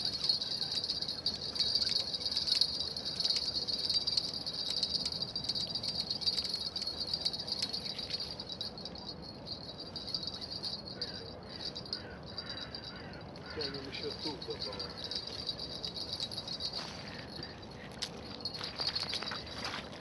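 Crickets chirping in a steady high-pitched trill, louder in the first several seconds and again near the end, with faint voices in the background.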